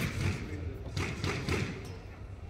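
A squash ball bounced on the wooden court floor, giving about four short thuds roughly half a second apart, as a player readies to serve.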